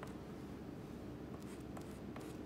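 White chalk drawing a line across a chalkboard: faint scratching with a few short taps near the end, over a steady low room hum.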